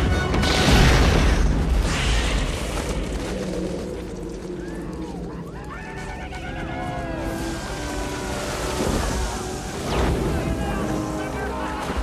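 Film soundtrack mix. A deep explosion boom with a long rumble comes about a second in, as the giant bug bursts, over an orchestral score. Shouting voices follow, with another heavy hit near the end.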